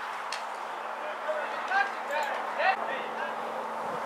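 Footballers shouting to each other on the pitch during an attack, with several short high calls in the middle, over a steady background hiss. There are a couple of sharp knocks near the start.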